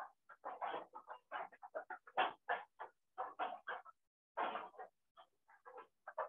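A faint, irregular run of short animal calls, a dozen or more in quick succession with a pause about two-thirds of the way through, heard through a video call's narrow audio.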